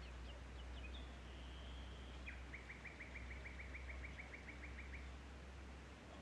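Faint bird calls: a few short high chirps, then a rapid even trill of about seven notes a second lasting nearly three seconds, over a steady low hum.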